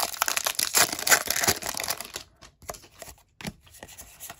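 Foil wrapper of a Pokémon Chilling Reign booster pack being torn open and crinkled for about two seconds. Then fainter rustles and taps as the cards are slid out and handled.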